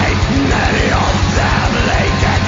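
Blackened death/doom metal song: harsh shouted vocals over very fast, even bass-drum beats.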